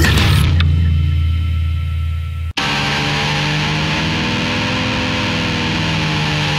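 Heavy metal album track change: a distorted final chord rings out and fades, cuts off briefly about two and a half seconds in, then the next track opens with a droning intro of held tones.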